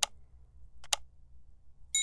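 Subscribe-button animation sound effect: two sharp mouse-click sounds about a second apart, then a bright bell ding near the end that rings on.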